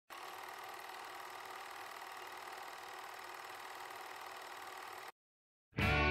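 Steady hiss of TV static with a faint buzz in it, cutting off suddenly about five seconds in.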